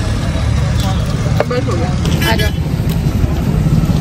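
Steady low rumble of road traffic on a busy street, with snatches of other people's voices in the background.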